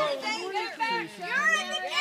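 Several people's voices, children among them, talking and calling out over one another outdoors.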